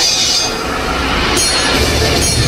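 Metal blades scraping with a screech and a high ringing, from the skit's recorded sound effects. Heavy bass begins near the end.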